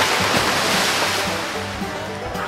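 A sudden loud rushing noise that starts abruptly and fades away over about two seconds, over background music.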